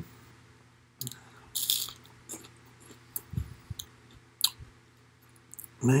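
A person chewing a crunchy fried pork rind spread with pumpkin seed butter: a run of irregular crisp crunches and clicks close to the microphone, the loudest a bit under two seconds in and again past four seconds.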